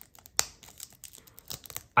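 Plastic shrink wrap on a Blu-ray case crackling and crinkling as fingers handle it, with scattered small clicks and one sharper click about half a second in.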